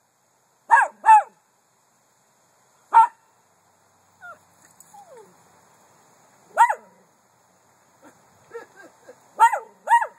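Miniature poodle barking in short, high yaps: two quick barks about a second in, single barks a few seconds apart, then two close together near the end. Between them come a couple of soft falling whines and faint little yips.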